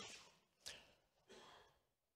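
Near silence, with a faint breath at the lectern microphone about half a second in.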